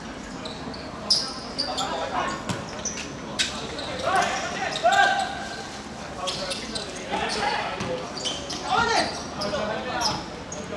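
Football players shouting calls to one another during play, with a few sharp thuds of the ball being kicked in the first few seconds.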